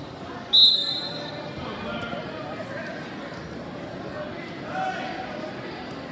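Spectators' voices murmuring in a large gym hall during a wrestling bout, cut about half a second in by one sudden, loud, high-pitched squeal.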